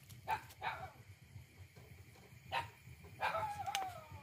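Short, pitched animal calls: two quick ones near the start, another past halfway, and a longer wavering call that falls slightly near the end.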